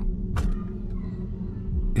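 A steady, low, dark ambient drone from the background music bed, with a short hiss about half a second in.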